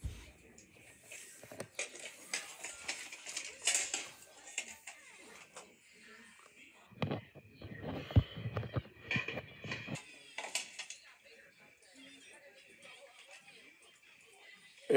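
Faint speech from a television in a small room, with knocks and rubbing from a handheld phone being moved about.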